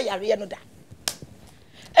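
A single sharp click about a second in, between stretches of a woman's speech.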